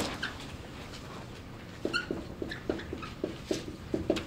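Dry-erase marker squeaking and tapping on a whiteboard as words are written, a run of short strokes about four a second starting about two seconds in.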